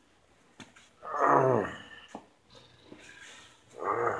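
A man's drawn-out groan falling in pitch, about a second in, with a couple of light clicks around it.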